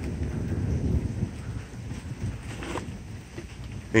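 Low rumble of distant thunder from a thunderstorm that has just passed, easing off after about a second and a half, over a faint hiss of light rain.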